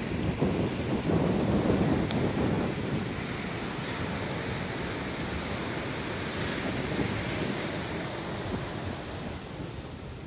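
Ocean surf: small waves breaking and washing up a sandy shore, louder in the first few seconds and then a steady wash.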